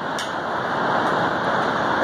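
Steady rush of water from Shoshone Falls, a large waterfall on the Snake River.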